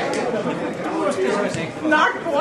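Chatter of several people talking at once, their voices overlapping: spectators talking at the pitchside.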